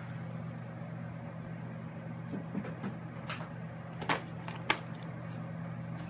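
A steady low hum, with a few faint clicks and taps from about two seconds in.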